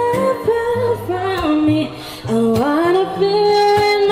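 A woman singing live into a microphone, accompanied by an acoustic guitar; she holds one long note in the second half.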